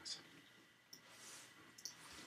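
Near silence with two faint computer-mouse clicks, one about a second in and one near the end, as text is selected by dragging.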